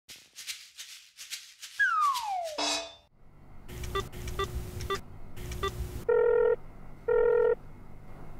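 Mobile phone call sound effects: keypad tapping while a number is dialled, then two short ringing tones about half a second apart near the end as the call connects. This follows an opening effect of a tone sliding down in pitch.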